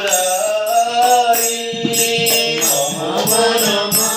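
A man singing a devotional bhajan in a slow, held melodic line, accompanied by a mridanga drum's hand strokes and the ringing of small hand cymbals (kartals).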